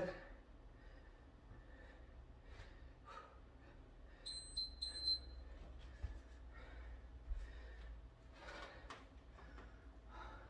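An interval timer sounds a quick run of short, high-pitched beeps about four seconds in, marking the end of a 30-second work interval. Otherwise only faint movement and room sound.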